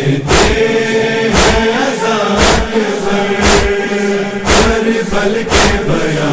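Voices of a noha chorus holding a long wordless chanted note, over sharp strikes about once a second: the chest-beating (matam) beat that keeps time in a Shia noha lament.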